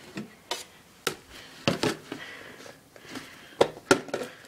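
About half a dozen short, sharp clicks and knocks of a refrigerator door and drawer being handled.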